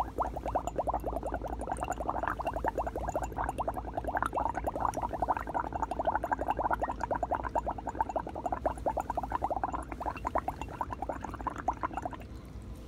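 Exhaled breath blown through a plastic straw into a small glass beaker of water, bubbling rapidly and continuously.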